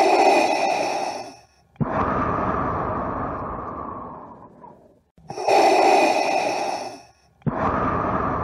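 Darth Vader's mechanical respirator breathing sound effect: a hissing inhale followed by a longer exhale that fades away, twice, in a slow steady rhythm.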